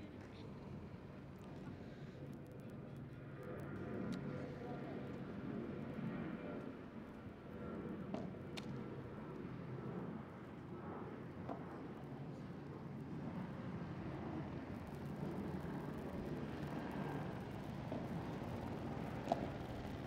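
Outdoor court ambience between points: a steady low rumble with faint voices, and a few sharp taps about eight seconds in and again near the end.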